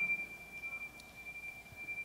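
A steady, high-pitched electronic tone on one pure pitch, slowly fading.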